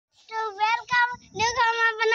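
A child singing in a high voice: a few short phrases, the last one held longer.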